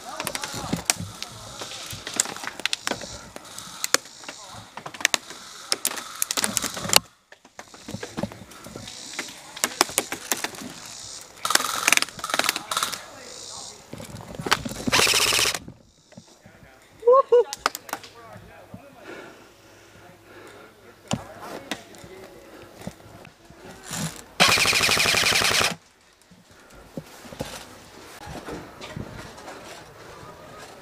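Airsoft rifles firing in rapid bursts of sharp cracks, heaviest in the first several seconds and again in a few later bursts, with a short distant voice between them.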